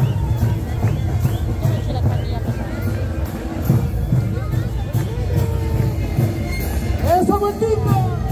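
Kantus band music: massed panpipes over a steady beat of large bass drums, with evenly ticking high strokes, about three a second, and crowd voices mixed in.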